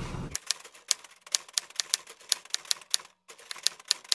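Typewriter key-strike sound effect: a quick, uneven run of sharp clicks, about five a second, with a short break near the end.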